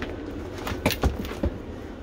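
Handling noise from a phone being picked up and repositioned: a few sharp knocks and clicks around the middle, with rubbing in between.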